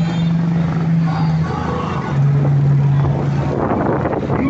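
A vehicle horn gives two long, low, steady blasts, the second a two-note chord, over street noise.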